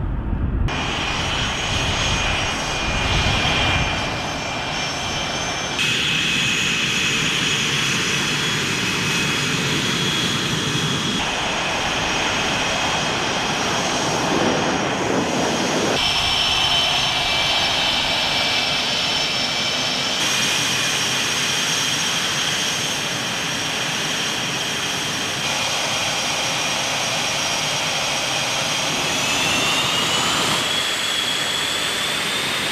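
F/A-18 Hornet twin General Electric F404 turbofans running on the ground: a steady high-pitched turbine whine over a rushing roar, changing abruptly several times. Near the end the whine rises in pitch as the engines spool up.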